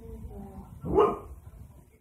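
A dog barks once, sharply, about a second in: a demanding bark at a Minion toy that it wants, which has been put up on the counter out of its reach.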